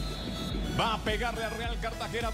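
Football match television broadcast sound: a male commentator's voice begins about a second in, over a steady low background with music.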